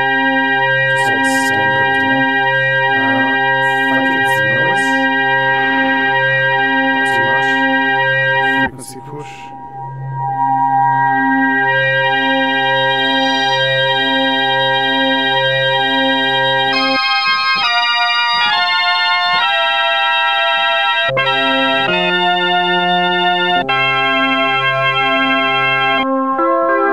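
Roland Boutique JU-06 synthesizer playing an organ-like preset: held chords over a low note pulsing in a steady rhythm. The sound dips briefly about a third of the way in, and the chords change several times in the second half.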